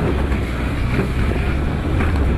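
Off-road buggy's engine running under way with a steady low drone, with wind noise on the microphone.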